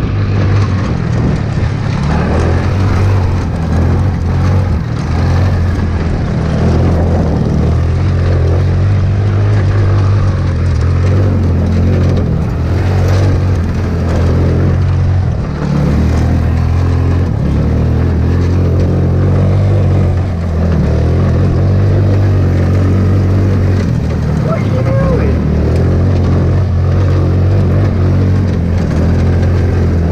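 Hammerhead GTS 150 go-kart's 150cc single-cylinder engine running as the kart is driven, its pitch and level rising and falling with the throttle, with brief dips about halfway through.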